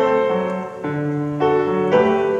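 Grand piano played in a slow, sustained style, with new chords struck about a second in and again shortly before the end, each ringing on under the next.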